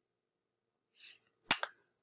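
A sharp click about a second and a half in, followed at once by a second, smaller click, against near silence.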